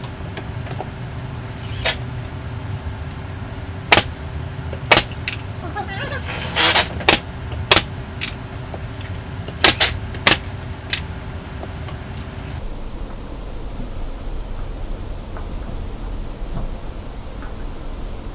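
Pneumatic brad nailer firing brad nails through wooden drawer fronts: about nine sharp shots, single and in quick pairs, spread over the first eleven seconds. A steady background hum runs under them and cuts off about two-thirds of the way through.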